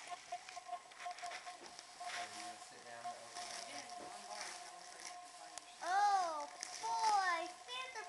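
Wrapping paper crackling and tearing as a child rips open a present, in irregular rustles. About six and seven seconds in, a child's voice gives two loud high-pitched rising-and-falling calls.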